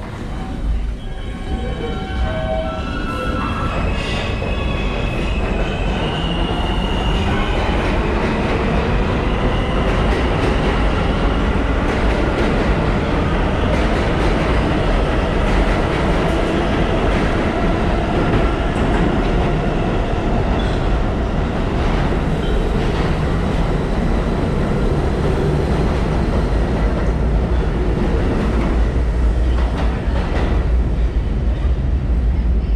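New York City subway train running in an underground station, its rumble growing steadily louder, with thin high squealing tones over the first several seconds.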